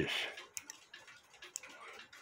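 A few faint, irregular ticks from a cuckoo clock main wheel's ratchet click snapping over the ratchet teeth as the wheel is turned by hand. The click is now catching the teeth after being pressed back down.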